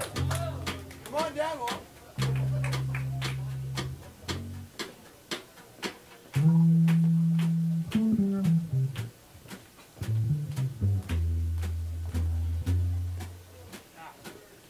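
Electric bass guitar solo: long held low notes broken by short runs, one falling run about eight seconds in, over a light drum beat ticking steadily.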